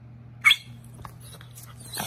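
Small fluffy dog gives one short, high-pitched yip about half a second in, a sign that it is eager to play.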